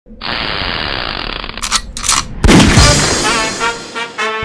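Logo-reveal sound effects: a steady whooshing hiss, two quick swishes, then a sudden loud hit about two and a half seconds in that rings and fades away.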